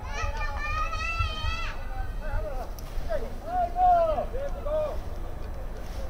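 High-pitched voices calling out from the crowd or sideline: one long wavering held shout, then several shorter rising-and-falling calls, over a steady low rumble.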